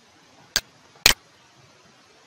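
Two sharp computer mouse clicks about half a second apart, over faint background hiss.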